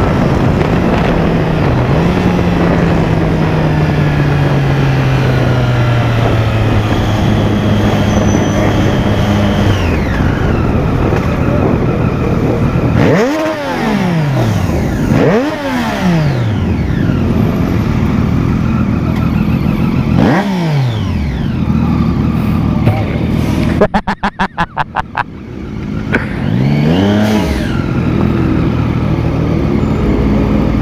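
Motorcycle engines. First one engine slows from highway speed, its pitch falling steadily over wind rush, with a short jump in pitch about two seconds in. Then come four short throttle blips, each rising and falling, and a quick string of sharp pops about two-thirds of the way through.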